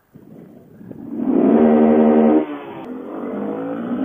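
Honda Grom's 125 cc single-cylinder engine pulling away from a stop, launched in second gear. It comes in about a second in, holds a steady pitch for about a second and a half, then eases off to a lower level.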